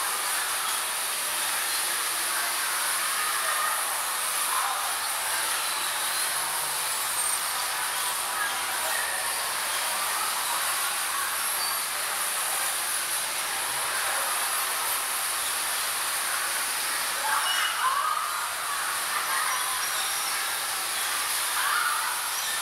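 Electric bumper cars driving around the rink: a steady, hissing running noise with no pauses, swelling slightly about three quarters of the way through.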